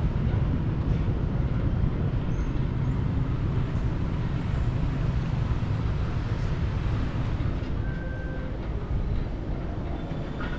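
Steady low rumble and wind noise inside a moving cable car cabin, with no distinct events.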